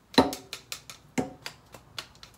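A wooden spatula knocking against a metal mesh strainer, tapping rinsed quinoa out into a pan: about six sharp, uneven knocks, the first the loudest.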